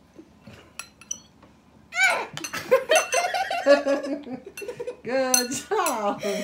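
Metal spoons clinking lightly against ceramic bowls as marshmallows are scooped. From about two seconds in, girls giggle and laugh over more spoon clinks, and the laughter is the loudest sound.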